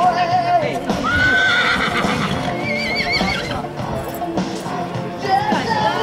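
A horse whinnies over background music: a high call that rises and holds about a second in, followed by a wavering high tail near the middle.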